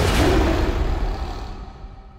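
The closing boom of a show's opening theme music, ringing on with a few held tones and then fading away over about two seconds.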